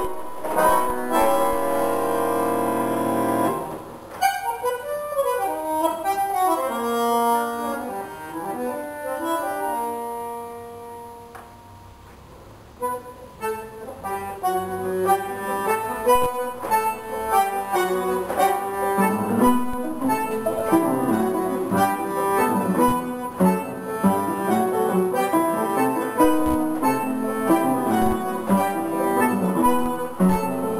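A bandoneón and piano duo playing a tango. It opens on a held chord, drops to a soft single-note line that is quietest about twelve seconds in, then builds back into busier rhythmic playing from both instruments.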